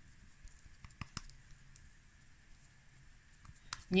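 Faint, scattered soft clicks and smacks of hands squeezing and shaping a ball of moist cottage-cheese dough, over low room tone.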